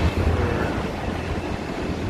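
Street ambience: a steady rumble of road traffic, with wind on the phone microphone.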